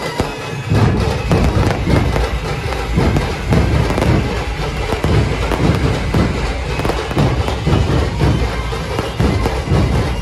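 Firecrackers crackling and bursting in rapid succession, over loud music with a heavy low beat.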